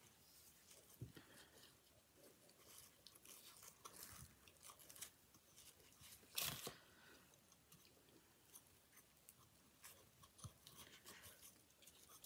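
Faint rustling and crinkling of ribbon being handled and looped onto a wooden bow maker, with one louder crinkle about six and a half seconds in.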